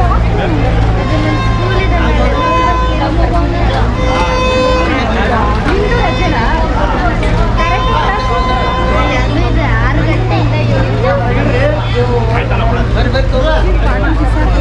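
A large outdoor crowd of devotees talking and calling out at once, a dense babble of many voices over a steady low hum. A few brief held tones, about one, four and eight seconds in, rise above the voices.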